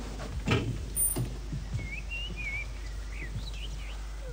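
A bird chirping a few short, wavering notes through an open window, in the second half, over a faint steady room hum; a couple of faint knocks come in the first second.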